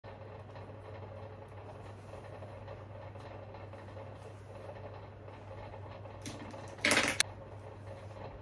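Quiet room tone with a steady low hum, broken about seven seconds in by a brief loud rustle that ends in a sharp click.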